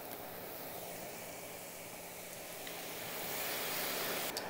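Corn tortilla strips frying in shallow hot oil: a steady sizzling hiss of oil bubbling hard around a freshly added batch, swelling a little near the end as the strips are stirred.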